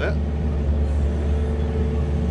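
A steady low rumble with a faint, even hum above it, like a running motor.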